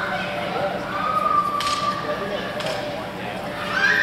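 Voices and calls echoing in a large hall, with two sharp knocks about a second and a half and two and a half seconds in.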